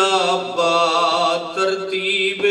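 A man's voice chanting a Punjabi elegiac verse in long, held, wavering notes, a mourning recitation.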